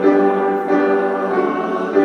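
Small mixed choir singing held notes with piano accompaniment, moving to a new chord about two thirds of a second in and again near the end.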